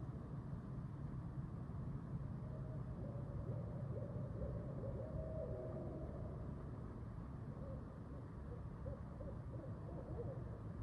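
Faint, distant animal calls: long wavering tones, one sliding down in pitch about halfway through, with more near the end, over a steady low background rumble.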